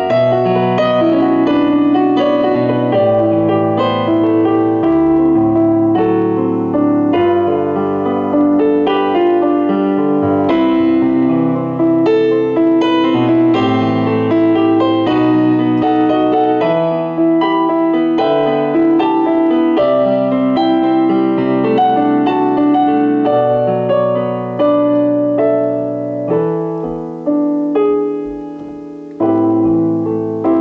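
Digital piano played with both hands: a continuous flowing piece of many notes. Near the end one chord is held and fades for a couple of seconds before the playing picks up again.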